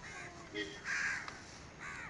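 Crows cawing: three short, harsh caws about a second apart, the middle one the loudest.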